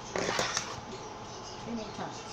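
Handling noise as the fondant sheet is worked around the cake: one brief rustle, about half a second long, shortly after the start.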